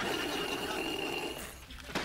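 A long slurp through a drinking straw from a juice box: a steady, buzzing hiss with a thin whistle. It stops about a second and a half in, and a short click follows near the end.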